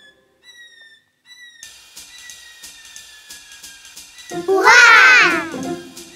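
Quiet cartoon background music: a few high held notes over light, regular ticking percussion. About four and a half seconds in comes a loud, voice-like cartoon character sound with a rapidly wavering pitch, lasting about a second.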